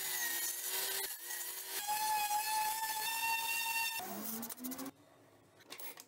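Power drill motor whining in several short runs, each at a steady pitch, the longest in the middle; near the end the motor winds down with a falling pitch.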